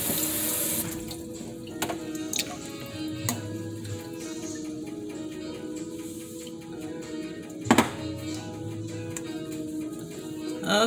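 A tap runs into a sink and is shut off about a second in. Then music plays, with a few light knocks and a sharp double clack about three-quarters of the way through.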